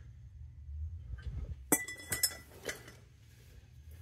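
Metal parts of an old vapor-steam direct return trap clinking as they are handled: a sharp clink nearly two seconds in that rings briefly, then a few lighter clinks.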